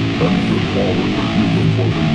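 Stoner doom rock music: electric guitar and bass guitar playing a sustained, heavy riff.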